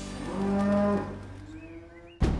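A dairy cow mooing once: a single call that swells and then fades over about a second.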